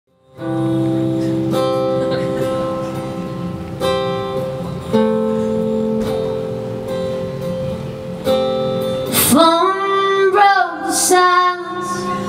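Solo acoustic guitar strummed through a live PA, chords struck and left to ring every second or two as a song's introduction; a woman's singing voice comes in about nine seconds in.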